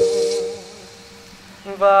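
Lofi remix of a Vietnamese bolero song: a male voice holds a sung note that fades out about half a second in, then a brief lull, and the singing comes back in near the end.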